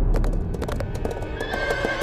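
A galloping horse, its hooves beating rapidly on hard ground, with a deep low boom at the start. Near the end a horse begins to whinny, over dramatic score music.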